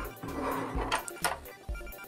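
Light plastic clicks and knocks of a toy jet being handled and turned over in the hands, a few of them about a second in and near the end, over soft background music.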